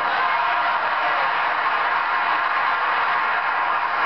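An audience applauding, a steady, dense clapping that fills the pause in a speech.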